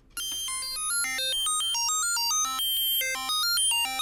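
A Eurorack synthesizer oscillator playing a fast stepped sequence of short notes through the high-pass output of a Bastl Instruments Propust passive fixed filter, leaving mostly the upper harmonics: a bright, computery-sounding run of beeps. It starts a moment in and stops at the end.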